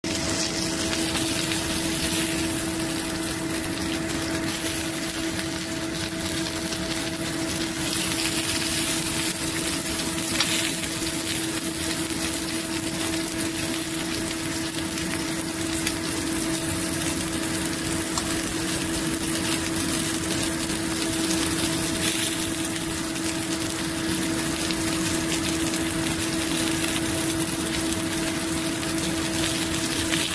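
Beef and bell-pepper kebabs sizzling steadily on a ridged grill, over a constant low mechanical hum.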